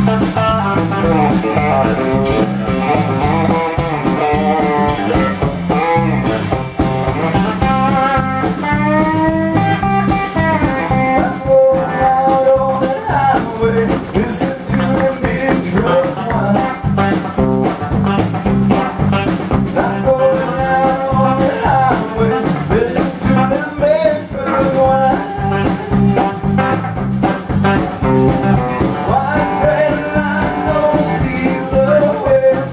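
Live blues-country band playing: a Telecaster-style electric guitar with a male voice singing, over a steady low beat.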